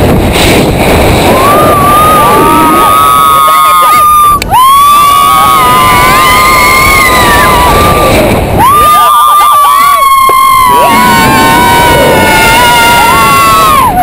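Riders on a giant swing screaming: three long, high shrieks, each held for several seconds and broken by short catches of breath, over loud wind rushing across the microphone.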